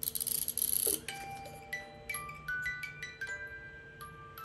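Small wind-up music box playing a tinkling melody of single plucked metal notes that ring on, starting about a second in after a brief scratchy rustle.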